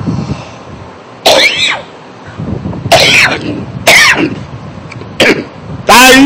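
A man's short throaty vocal bursts, about five, coughs and throat-clearing sounds spaced a second or so apart, with no words between them.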